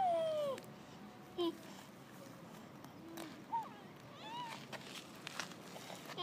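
A young child's short high-pitched vocal sounds without words: a half-second rising-and-falling call at the start, then a few shorter ones spread through the rest.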